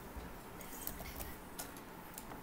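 A few faint, scattered computer-mouse clicks over low room noise.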